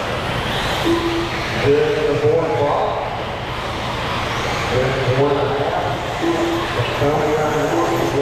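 Electric RC buggies racing on an indoor dirt track, with their motors and tyres mixed under indistinct voices echoing in a large hall. It is a steady, busy din with no single event standing out.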